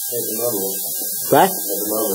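Steady electrical mains hum on the lecture recording, under a faint voice from off the microphone and one short spoken word about a second and a half in.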